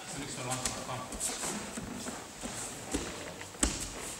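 Background voices in a large sports hall, with the dull footfalls of bare feet stepping on judo tatami mats and a short knock about three and a half seconds in.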